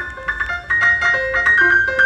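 Grand piano played solo in a high register: quick, light single notes in a sparse jazz line, with a few notes left ringing.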